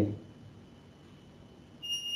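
Quiet room tone, then near the end a single high-pitched electronic beep starts, a steady tone held for under a second.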